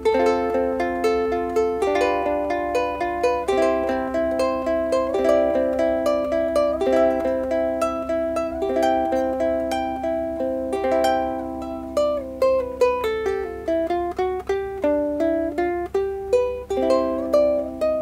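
Big Island U-MO-CTS concert ukulele with a mango-wood body, fingerpicked: plucked chords under a melody, with a few sliding notes in the second half. It has a very gentle, sweet tone.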